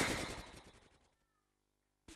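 A heavy breath exhaled straight into a handheld microphone held at the lips. It is loudest at the start and fades out over about a second.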